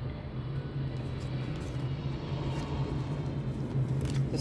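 Steady low hum and rumble, with a few faint clicks from playing cards being picked up and handled.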